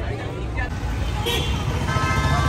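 Street traffic noise: a steady low rumble of vehicles, with people's voices nearby.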